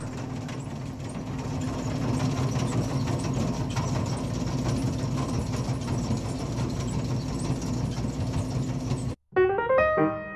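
Skid steer running steadily with its Bobcat Rockhound power rake attachment working, a steady mechanical hum that grows a little louder over the first two seconds. Near the end it cuts off abruptly and piano music begins.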